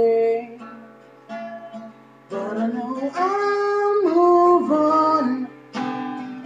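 A man singing over a strummed acoustic guitar. After a held note at the start and a quieter stretch of guitar, a long sung phrase begins about two seconds in, stepping and sliding between notes until near the end.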